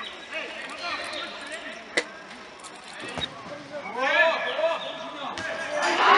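Players and spectators shouting across a football pitch, the words unclear, with a single sharp knock of a football being kicked about two seconds in and louder shouting near the end.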